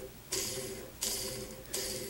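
Dubbing-loop spinner twirling a thread loop loaded with rabbit fur, flicked about three times. Each spin is a short, high, hissing whir that starts sharply and fades away as the loop twists tight around the fur.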